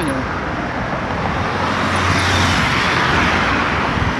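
Road traffic on a city avenue, with a vehicle passing close: tyre and engine noise swells about two seconds in and eases off near the end.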